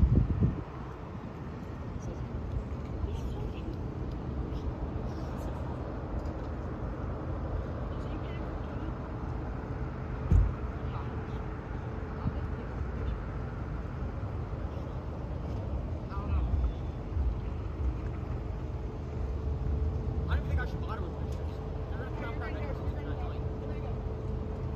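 Steady low rumble with a faint, steady hum that sets in about halfway through, and a single thump about ten seconds in. Faint voices are heard toward the end.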